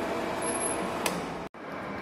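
Centre lathe running with a steady mechanical hum, with a single sharp click about a second in. The sound breaks off abruptly about three-quarters of the way through and resumes as a quieter steady hum.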